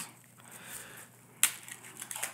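Quiet handling of a fortune cookie and its plastic wrapper by gloved hands, with one sharp click about one and a half seconds in.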